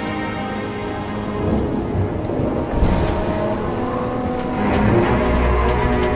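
Thunderstorm: rain falling with thunder, a sudden crack about three seconds in and a heavier low rumble building near the end.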